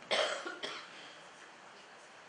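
A person coughing twice in quick succession, the second cough about half a second after the first, in a large hall.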